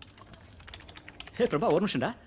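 Computer keyboard being typed on: a quick, uneven run of key clicks, with a voice speaking over the last half second or so.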